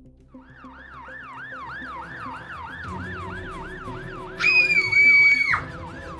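Emergency-vehicle siren in a fast yelp, rising sweeps repeating about three times a second, over background music. About four and a half seconds in, a loud held high tone cuts in for about a second and then stops.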